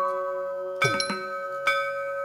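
Carnatic dance accompaniment: a steady drone and held melodic notes, with two sharp, ringing metallic strikes, each paired with a low drum stroke, about a second apart.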